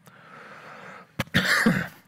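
A man coughs once, briefly, a little over a second in, after a faint noisy first second.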